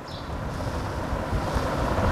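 Low rumbling noise on a clip-on lapel microphone, with a faint hiss above it, swelling toward the latter half.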